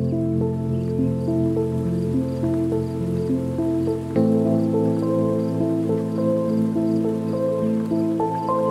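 Lofi hip hop music: soft keyboard notes over sustained low chords, with a chord change about four seconds in and faint light ticks high above.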